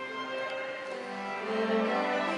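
A string orchestra playing slow, sustained bowed notes. A lower note comes in and the sound swells about a second and a half in.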